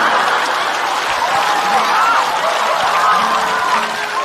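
Studio audience applauding over soft background music with long held notes.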